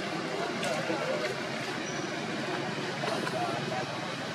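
Indistinct background chatter of several people's voices over a steady outdoor hum, with one sharp click at the very start.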